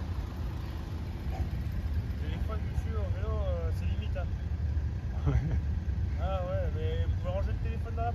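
Steady low rumble of movement and wind noise on a phone microphone carried on a moving bicycle. Indistinct voices talk briefly twice, a few seconds in and again near the end.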